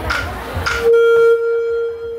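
A single long held note from a wind instrument starts about a second in, steady in pitch, loudest at its start and then a little softer, carrying on past the end. Before it there is a murmur of voices with two short sharp clicks.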